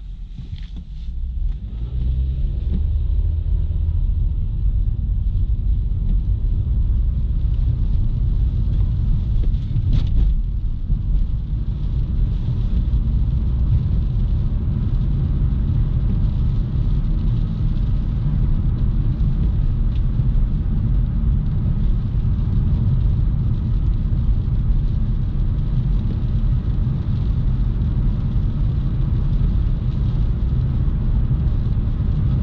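Inside the cabin of a 2012 Nissan Juke with the 1.6-litre four-cylinder petrol engine: engine and road rumble building over the first couple of seconds as the car gathers speed, then holding steady while it drives on. A short click about ten seconds in.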